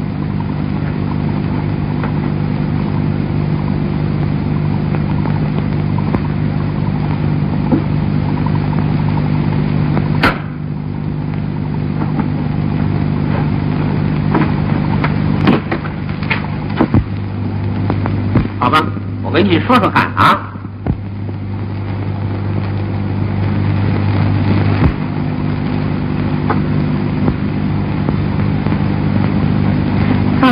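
Low sustained chords of background film music on an old, narrow-band soundtrack, shifting pitch a little over halfway through and again near the end. A few faint clicks and a brief murmur of voices come about two-thirds of the way in.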